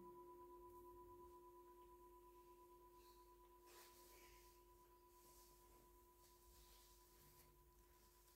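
Faint, sustained ringing tone holding two steady pitches, one higher and one lower, slowly fading away over an otherwise near-silent room.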